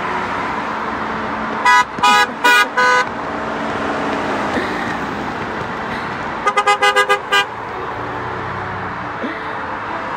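Car horns honking from passing vehicles: four loud blasts about two seconds in, then a quick string of about seven short toots near the seven-second mark. Steady noise of cars driving by on the road runs underneath.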